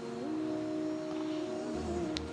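Soft background music of sustained, drone-like chords whose notes step up once shortly after the start.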